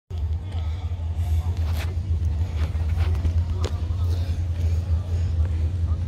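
An engine running steadily at idle, a deep low rumble, with faint voices in the background.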